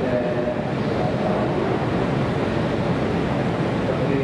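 Keihan 8000-series electric train running, a steady rumble of wheels and motors with no pauses.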